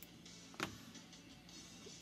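Faint background music with one brief sharp click about half a second in, from hands handling materials at a fly-tying vise.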